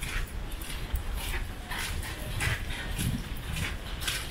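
Gusty wind rumbling on the microphone, with a string of short, sharp sounds over it, roughly two a second.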